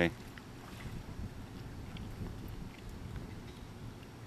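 Outdoor background: a low, steady rumble of wind on the microphone, with a few faint clicks.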